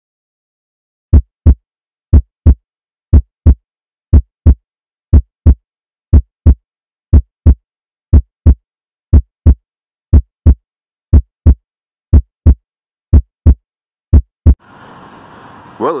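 Heartbeat sound effect: paired low thumps (lub-dub), about one pair a second, fourteen beats in all, stopping about a second before a man's voice comes in.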